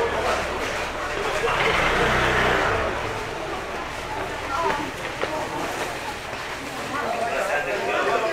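Motor scooter riding past, its engine hum swelling to its loudest about two seconds in and then fading, with people talking nearby.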